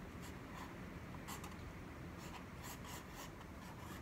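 Faint, short scratches of a wooden drawing stick dipped in ink, its tip drawing lines on wet watercolour paper, several strokes scattered across a few seconds.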